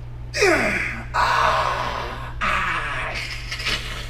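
A man's strained groan that falls in pitch, followed by two long, forceful breaths out, made while flexing hard through bodybuilding poses.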